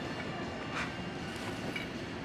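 Steady low rumble of background noise, with a couple of faint clicks about a second in and near the end.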